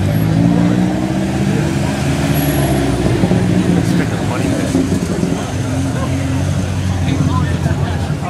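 Car engines running as several cars drive slowly past one after another, a low steady drone that shifts a little in pitch as each car passes.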